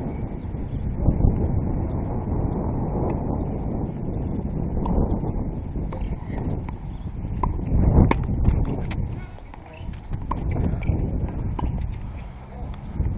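Tennis ball being struck and bouncing during a rally: a series of sharp pops, mostly in the second half, the loudest about eight seconds in. Wind buffets the microphone throughout.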